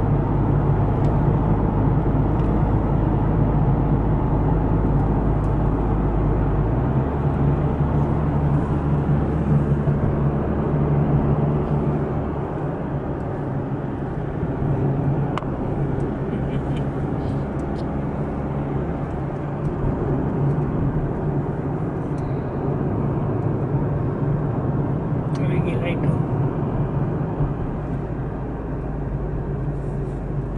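Car driving on the road, heard from inside the cabin: a steady low rumble of engine and tyres, whose low hum shifts about seven seconds in and eases somewhat a few seconds later.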